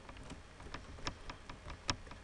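Computer keyboard and mouse clicks: a scattering of light clicks, with one sharper click near the end.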